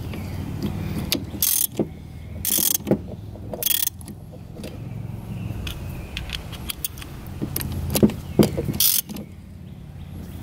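A hand ratchet wrench working on the cap of an outboard's hydraulic tilt/trim cylinder: short bursts of fast ratchet clicking, with a few sharp metal clicks about eight seconds in, over a steady low rumble.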